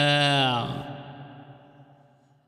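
A man singing a Kabyle song holds one long, steady note that stops about half a second in, then fades away in an echo.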